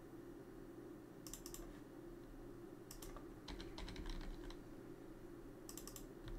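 Faint computer mouse clicks and keyboard keystrokes in short bursts: a few clicks about a second in and again near three seconds, a quick run of keystrokes around four seconds, and more clicks near the end. A low steady hum sits underneath.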